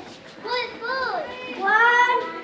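Young children's voices calling out on stage in short, high exclamations with rising and falling pitch, the loudest call rising near the end.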